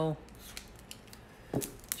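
A blade cutting into plastic wrap: faint scraping, then a couple of sharp clicks about one and a half seconds in.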